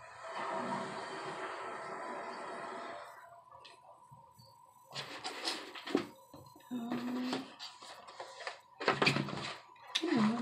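Background music playing at a moderate level, with a few brief voice-like sounds in the second half.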